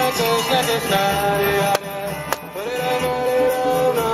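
Singing voices holding long notes that slide from one pitch to the next, chant-like, with two short clicks near the middle.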